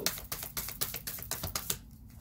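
A deck of tarot cards being shuffled by hand: a quick, irregular run of light card clicks and flicks that stops near the end.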